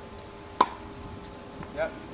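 A tennis racket striking the ball on a groundstroke: one sharp, clean pop about half a second in. It is a solid hit of the kind the coach wants to hear, and he approves it right away.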